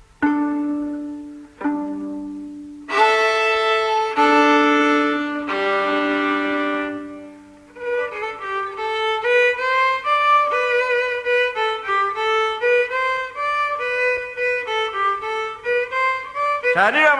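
A violin being tuned: five or so long bowed double stops on open strings a fifth apart. About eight seconds in it breaks into a quick, ornamented melody with vibrato, the opening of a chacarera.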